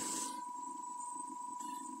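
DC motor running steadily as the load in a battery circuit, with a constant whine.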